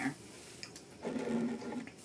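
A short closed-mouth 'mmm' hum, held at one pitch for about a second, starting about a second in, with a faint tick or two before it.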